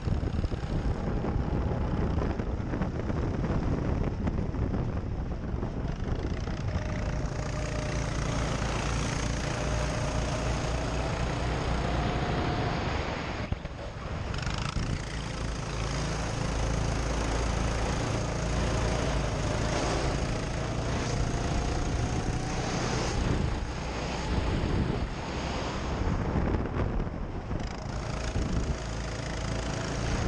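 Go-kart running at speed on a track, its motor note rising in pitch several times as it accelerates, over heavy wind rush on the kart-mounted microphone. Roughly halfway through the sound drops briefly, then picks up again.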